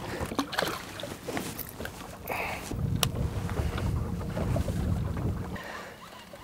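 Wind rumbling on the microphone aboard a small open fishing boat, with a few faint clicks and knocks. The rumble grows stronger about halfway through and drops away near the end.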